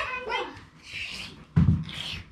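A dog whimpering in short, high, bending whines, then a dull thump about one and a half seconds in.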